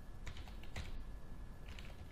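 Computer keyboard being typed on: a scattering of faint, irregular key clicks as a passphrase is entered.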